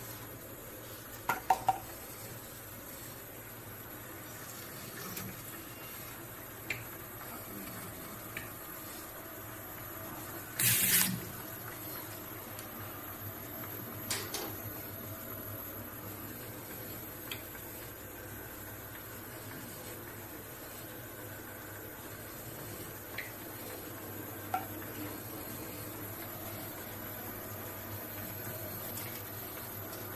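HYTB-150S automatic round-jar labeling machine running: a steady hum and running noise from its conveyor and drive, with scattered sharp clicks and a short, louder rush of noise about ten and a half seconds in.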